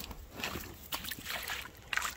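Pond water sloshing and splashing in a few irregular strokes as a person wades into the shallow, muddy edge.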